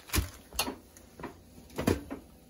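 A few sharp knocks and clicks from handling at the stove, three in two seconds, the loudest just after the start and near the end.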